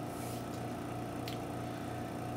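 Vacuum pump of a Quick Image 2621 LED exposure unit running with a steady hum as it holds the drawdown on the screen, with one faint click a little past a second in.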